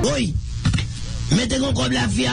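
Guitar music cuts off at the very start. A man's voice follows with drawn-out vowels that glide up and down in pitch, then holds a long sustained tone that leads into speech.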